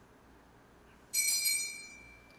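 A small altar bell struck once about a second in, ringing with a high tone that fades away over the next second or so: the consecration bell, rung as the priest bows before the consecrated host.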